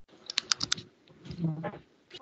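A quick run of about five sharp clicks, typing on a computer keyboard picked up over the video call, followed by a brief muffled voice fragment near the end.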